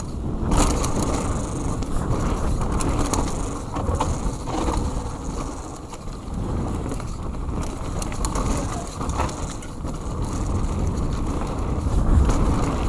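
Mountain bike descending a dirt forest trail: tyres rolling and crunching over the dirt, with the bike rattling and clicking irregularly over bumps.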